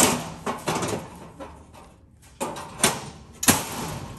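Galvanized sheet-metal panel being set into place: a sharp metal clank at the start, then scraping and several sharp knocks as the panel is slid and its tabs seat.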